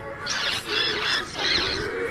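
Soundtrack run through a 'G Major' effect: layered, pitch-shifted copies of the original audio, heard as three high, warbling squeals in a row.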